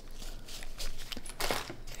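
Fabric knife pouches being handled: soft rustling and scuffing of the nylon, with a few light clicks.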